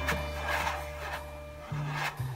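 Jazz drum brushes loaded with oil paint swishing across a canvas in about three sweeps, played along to a jazz recording with a sustained bass line and a held horn note that stops near the end.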